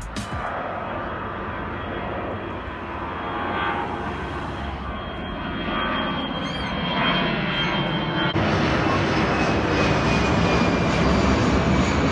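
Twin-engine jet airliner climbing out after take-off and passing overhead: a broad engine rush with a faint high whine, growing louder and stepping up sharply about eight seconds in.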